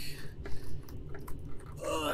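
A few light clicks and crackles of a clear PETG battery hatch being worked loose from its snug opening in a fiberglass fuselage.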